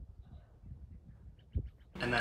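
Faint outdoor ambience of wind rumbling on the microphone, with a short, quick series of faint bird chirps near the end and one soft low thump just before them.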